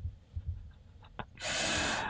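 A person breathing out heavily into a close microphone, a breathy hiss lasting about a second near the end, after laughing. Faint low thumps come at the start.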